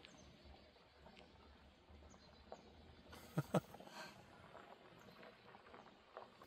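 Quiet outdoor ambience with a few faint, high bird chirps. Two brief sharp clicks come a little past the middle.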